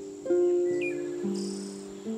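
Soft harp music: a chord plucked just after the start and a low note added about a second in, both left to ring. Over it, a short bird chirp and a brief high trill come in the middle.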